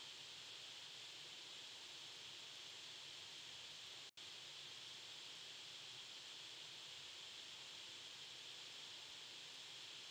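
Near silence: a steady faint hiss of microphone self-noise, which cuts out completely for an instant about four seconds in.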